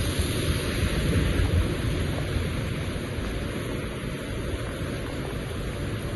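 Steady heavy rain, with wind rumbling on the microphone.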